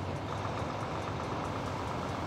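Volvo heavy truck's D13 diesel engine running at low rpm as the truck moves gently past, a steady low hum.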